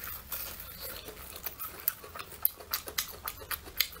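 Close-up crunching and chewing of a deep-fried brown sugar glutinous rice cake (hongtang ciba): irregular crisp crackles of the fried crust as it is bitten and chewed.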